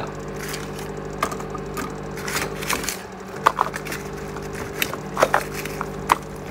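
A fan running with a steady hum, with several small sharp clicks and knocks from hands handling computer parts.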